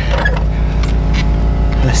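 A steady, loud low rumble runs throughout, with a few light clicks and scrapes as a steel floor jack with a wooden block on its saddle is set under a vehicle's frame.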